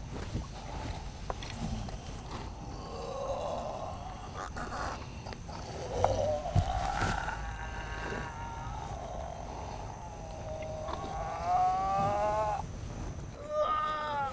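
A man's wordless, drawn-out moans and groans, typical of someone in a trance-like possession state. There are several long vocal sounds, and the last, near the end, is the loudest and slides upward in pitch.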